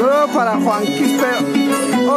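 Violin and harp playing a huayno together: the violin carries a sliding melody over the harp's steady low bass line.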